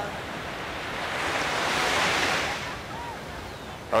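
Surf washing onto a beach: one wave's hiss swells up about a second in, peaks midway and fades away.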